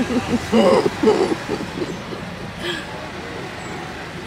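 Steady city traffic noise heard from inside a stopped van, with a short stretch of voices in the first second or so before the traffic alone carries on.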